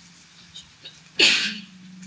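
A person sneezing once, about a second in: a sudden loud burst that drops into a short voiced tail.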